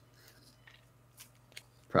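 A pause in speech: faint room tone with a low steady hum and a few soft clicks, then a man's voice starts again at the very end.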